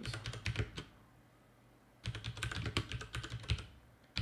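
Typing on a computer keyboard: a short run of keystrokes, a pause of about a second, then a longer run of keystrokes.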